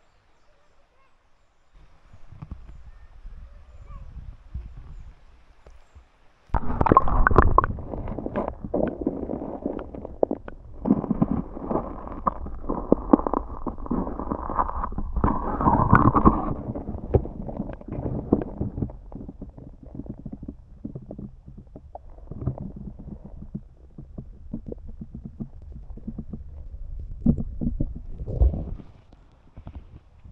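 Underwater camera handling and water noise: dull rumbling and irregular knocks, starting low after a quiet moment and turning suddenly loud about six and a half seconds in, then going on unevenly.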